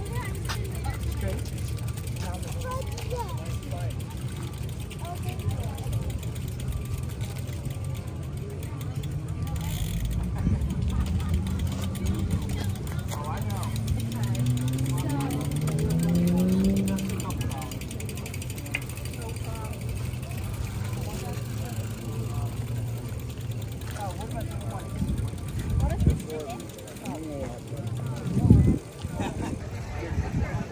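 Outdoor background of scattered distant voices over a steady low rumble. About halfway through, a pitched tone rises steadily for about four seconds and is the loudest part, with a short thump near the end.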